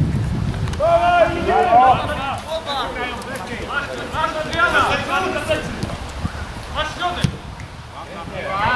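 Several men shouting and calling out at once across a football pitch during open play, with a low rumble of wind on the microphone in the first second.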